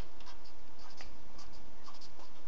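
Marker pen writing on paper: a run of short, separate strokes as letters and numbers are written.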